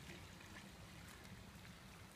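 Near silence: faint steady outdoor background with a low hum and light hiss.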